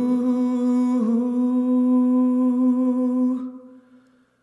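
A singer holding a long wordless 'ooh' on one note, a cappella, after a small step up in pitch at the start. About three and a half seconds in the note fades out, leaving a short reverberant tail.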